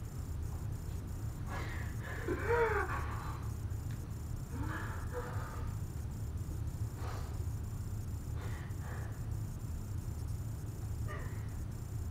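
A steady low room hum, with a few short, wavering vocal sounds from a person: the clearest about two seconds in, fainter ones near five and seven seconds.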